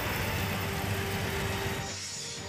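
Steady background noise of vehicles at a petrol pump: an engine running amid traffic, dropping away just before the end.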